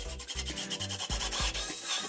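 A cordless drill running against the top of a wooden stud, a harsh, fast-pulsing whir that starts just after the opening and grows louder toward the end. Background music with a bass line plays underneath.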